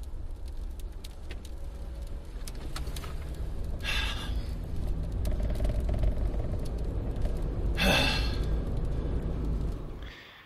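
Chevrolet Cobalt car heard from inside the cabin as it drives off again after hitting an elk, its shattered windshield still in place: a low engine and road rumble that grows louder as the car picks up speed. Two short noisy bursts stand out, about four and eight seconds in.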